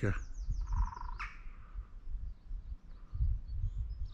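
A woodpecker drumming on wood: a rapid roll of taps lasting about a second, followed by faint bird calls.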